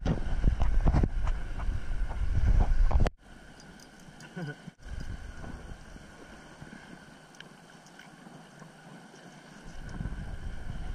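Wind buffeting the camera's waterproof housing: a loud low rumble for about three seconds that drops off suddenly to a faint steady hiss.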